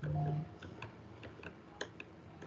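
Computer mouse clicking irregularly, a few clicks a second, as call buttons are pressed one after another. A brief low electronic tone sounds right at the start and is the loudest thing.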